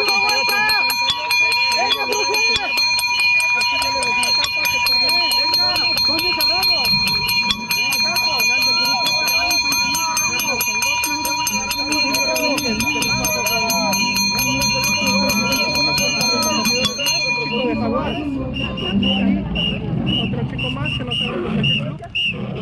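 Hand bell rung rapidly and without pause to signal the last lap of a track race; the ringing stops about 17 seconds in. Voices call out underneath.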